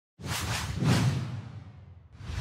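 Whoosh sound effect of an animated logo intro: a swish with a low rumble under it that swells in just after the start, peaks about a second in and fades away.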